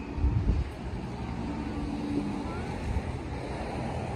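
Wind buffeting the microphone: an uneven low rumble, with its strongest gust about half a second in.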